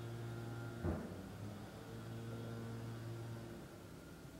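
Steady low electrical hum with a brief thump about a second in; the hum fades out shortly before the end.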